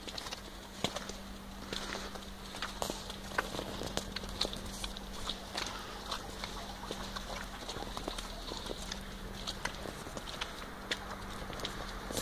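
Footsteps on snow: a string of short, irregular steps from people and a small dog walking, over a faint steady hum.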